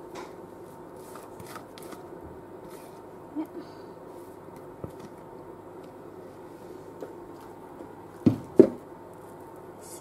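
Faint scraping and small clicks of a spatula and mixing bowl as thick cake batter is poured and scraped into a baking pan, over a low steady hum. Two sharp knocks close together near the end.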